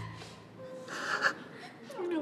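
A person's short, breathy gasp about a second in, as held music cuts off.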